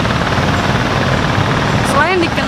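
Steady drone of small boat engines on the river with an even hiss over it.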